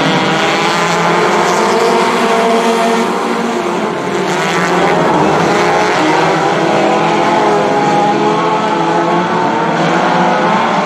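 A pack of four-cylinder dirt-track stock cars racing together. Many engines run hard at once, their overlapping pitches rising and falling as the cars go through the turns.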